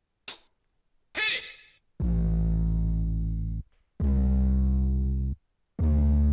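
Hip-hop samples from BandLab's Classic Hip-Hop Creator Kit triggered from MIDI controller drum pads: a short hit, then a brief sample that slides in pitch. After that come three held, bass-heavy musical phrases of about a second and a half each, each cutting off abruptly.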